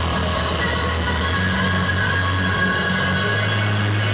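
Loud electronic dance music over a club sound system, in a passage carried by sustained deep bass tones without a clear beat.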